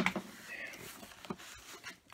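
Cardboard shipping box being handled and opened: a louder scrape right at the start, then scattered light rustles and taps.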